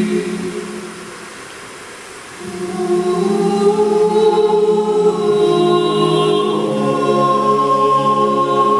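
Mixed choir singing a Ukrainian carol a cappella: a held chord fades out about a second in, and after a short lull the voices come back in at about two and a half seconds, building into sustained chords with the upper voices entering on top.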